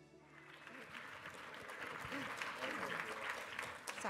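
An audience applauding in a lecture hall, building up over the first second, with a few voices over it. The last notes of intro music die away at the start.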